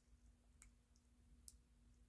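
Near silence: room tone with a faint steady hum and two faint short clicks, one about half a second in and one near the middle.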